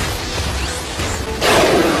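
Anime battle sound effects: rock crashing and whooshing over background music, with a sudden louder surge about one and a half seconds in.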